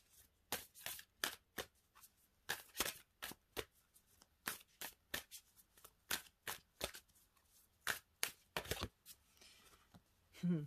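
A deck of oracle cards being shuffled by hand, a run of irregular quick snaps and slaps of card on card that stops about nine seconds in.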